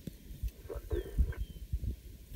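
Wind buffeting the microphone in irregular low gusts, with a few faint high chirps.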